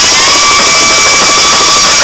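Hardcore dance music playing from a DJ's turntable mix: a harsh, dense noisy section with a faint tone rising slowly and no clear beat.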